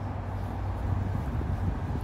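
A low, steady background rumble with a faint hum and no distinct events.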